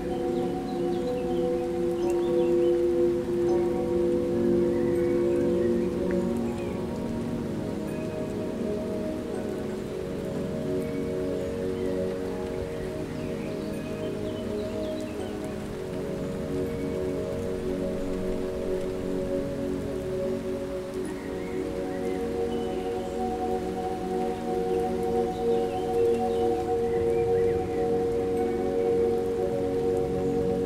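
Steady rain ambience under a soft ambient drone of held chord tones, which shift to new notes about a third of the way in and again later on.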